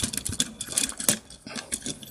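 The telescoping boom of a Multimac toy crane is being slid back in by hand, giving a run of small clicks and rattles. The loudest click comes about a second in, and it thins out after that.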